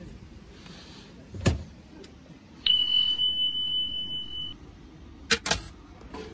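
A wooden feed-cup cabinet being handled: a knock, then a loud steady high beep lasting about two seconds, then two sharp clicks near the end.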